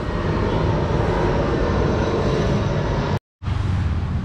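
Steady low rumble of outdoor background noise, cut off to silence for a moment a little after three seconds in.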